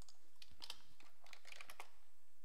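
Faint typing on a computer keyboard: a quick, uneven run of light keystroke clicks.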